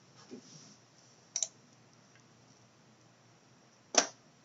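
Computer mouse button clicks: one press-and-release click about a second and a half in, and a louder one at the very end, over quiet room tone.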